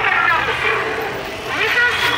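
Voices of people in a busy street over a steady low hum of traffic noise.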